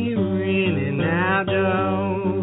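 A blues singer's voice holding long, bending notes over acoustic guitar.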